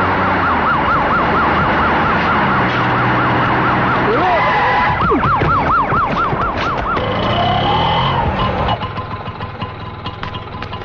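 Police siren with a fast warbling wail, rising and falling about three to four times a second. It breaks off about four seconds in, comes back for about two seconds, then stops.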